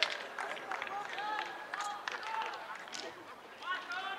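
Voices shouting and calling out across an outdoor football pitch in short, rising and falling calls, too distant to make out words, with a few sharp taps among them.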